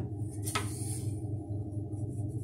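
Faint handling sounds at a wooden Mapuche loom as yarn and the wooden batten are handled, with one brief tick about half a second in, over a steady low hum.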